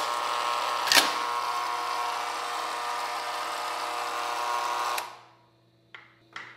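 A steady buzzing hum that starts abruptly, with one sharp hit about a second in, and cuts out about five seconds in.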